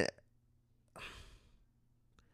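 A man's audible breath between phrases of speech: one short, noisy breath about a second in, lasting about half a second.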